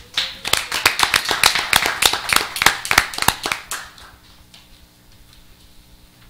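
Audience applause: a group of people clapping, which dies away about four seconds in.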